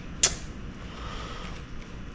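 Screwdriver turning the worm screw of a hose clamp on an in-tank fuel pump, with one sharp click about a quarter of a second in and faint handling noise after.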